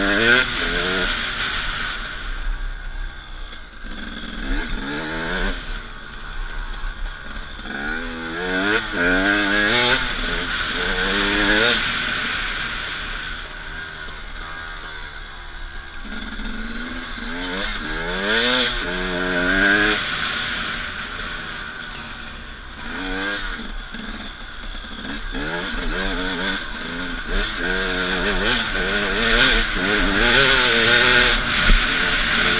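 KTM 250 enduro dirt bike engine ridden hard on a trail: it revs up again and again as the rider accelerates and shifts, and drops back between bursts into the corners.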